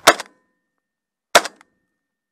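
Double-barrelled shotgun fired twice, two sharp reports about a second and a quarter apart.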